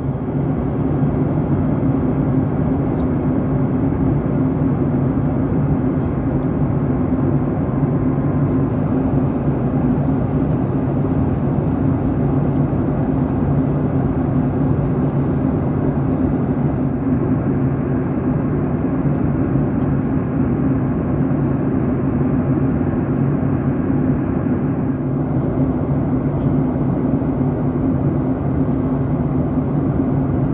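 Steady in-flight cabin noise of a Boeing 737 MAX 8 heard from inside the cabin: the even rush of its CFM LEAP-1B engines and airflow, with a constant low drone underneath.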